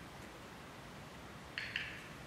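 Quiet room noise, broken near the end by a brief sharp double click, two quick parts a fraction of a second apart.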